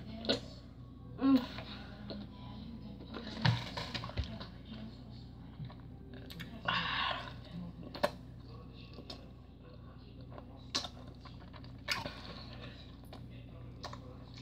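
Mouth noises from a boy with a mouthful of Skittles: scattered small clicks and smacks, a few short muffled hums, and a short hiss about seven seconds in, over a low steady hum.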